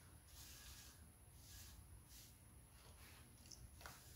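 Near silence: room tone, with a few faint soft hissing sounds.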